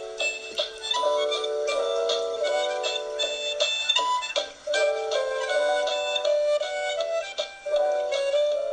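Harmonica playing a tune in chords, several notes sounding together, with brief breaks between phrases.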